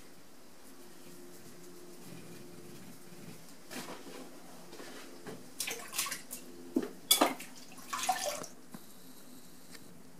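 Wet clay and water being handled on a turning potter's wheel: a faint steady low hum, then several short wet squelches and drips between about four and eight and a half seconds in, the loudest near seven seconds.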